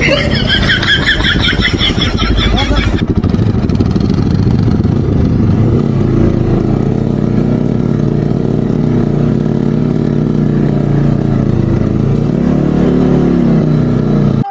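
A motorcycle engine runs continuously while riding a rough dirt track, its pitch rising and falling with the throttle, over a rumble of road and wind noise. A voice is heard over the engine in the first few seconds.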